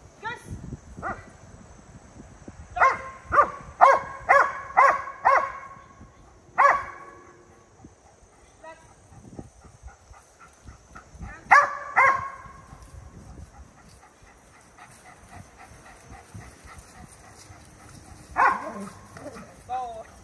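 Dog barking in short, sharp barks: a quick run of about six barks about three seconds in, then a single bark, a pair of barks midway, and one more near the end.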